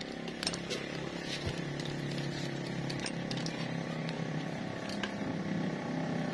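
A steady pitched hum runs throughout, with a few faint metallic clicks from a socket wrench tightening the 10 mm bolt of a scooter's oil pump.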